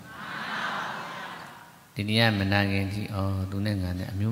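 A long breath close to the microphone, a breathy hiss that fades away over about two seconds, then a man's voice resumes in a drawn-out, chant-like delivery.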